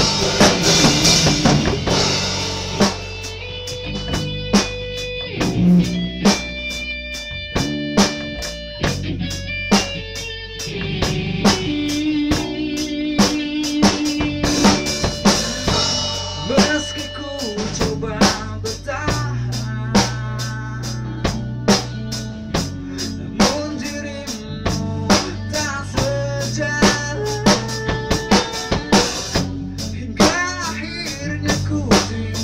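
Rock band playing: a drum kit keeps a steady beat with bass drum, snare and rimshots under electric bass and electric guitar notes, some of them bent and wavering.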